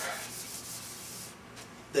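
A whiteboard being wiped clean by hand: a series of dry rubbing strokes across the board's surface, a little under two a second, that stop about a second and a half in.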